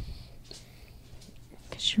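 A brief lull in a conversation: faint breaths and small mouth or mic noises, then a voice begins to speak near the end.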